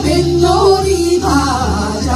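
Women singing a melody into microphones, amplified, over accompaniment with a steady low bass.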